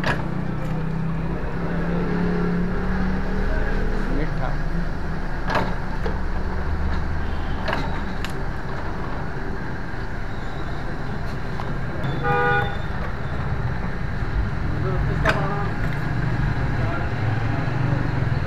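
Electric juice extractor running with a steady low hum as whole apple-mangoes are fed in and crushed. A short vehicle horn toot sounds about twelve seconds in, and a few sharp clicks come through.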